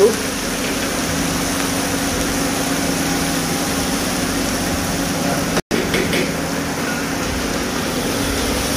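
Hot oil sizzling steadily in an iron karahi, over a steady low hum. The sound drops out for a split second about five and a half seconds in.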